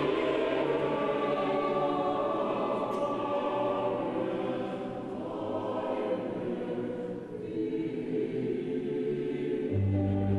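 Large mixed choir singing long sustained chords, growing softer in the middle, with a strong low held chord coming in near the end.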